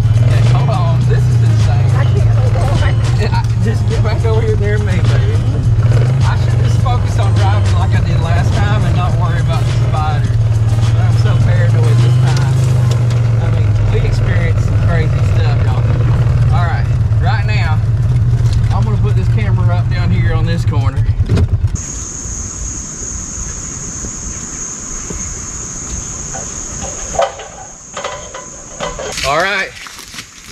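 Polaris 500 Crew side-by-side's engine running with knocks and rattles as it drives over a rough woodland trail. The engine sound stops abruptly about two-thirds of the way in, leaving a steady high-pitched buzz.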